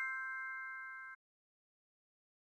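The fading ring of a bright chime sound effect, a few clear metallic tones held together. It cuts off abruptly just over a second in and is followed by silence.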